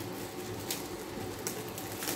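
A clear plastic packaging bag crinkling in a few short rustles as a metal hive scraper tool is worked out of it, over a faint low hum.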